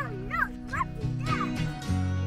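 A small dog yipping, about four short high yips in quick succession, over background guitar music.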